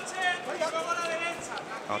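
Indistinct speech: voices heard over a boxing crowd, with no clear non-speech sound standing out.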